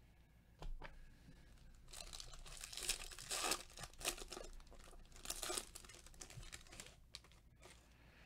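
Foil wrapper of a 2020 Topps Chrome jumbo baseball card pack being torn open and crinkled by gloved hands: a faint run of crackling from about two seconds in until nearly six seconds.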